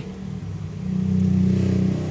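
A motor vehicle's engine running, a steady low hum that grows louder from about halfway through.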